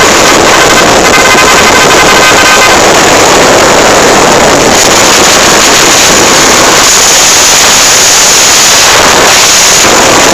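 Loud, steady wind rush on the microphone of a small motorcycle riding at road speed, with its engine and road noise running underneath. A faint high-pitched tone sounds for the first two to three seconds.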